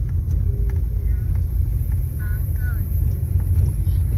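Steady low rumble of a car driving slowly, heard from inside the cabin, with a few faint snatches of voice.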